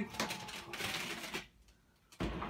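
Battery-powered electric roof-lift mechanism of a pop-up trailer roof running with a low hum and rapid clicking, then stopping abruptly about one and a half seconds in as the roof reaches the top and the mechanism cuts off.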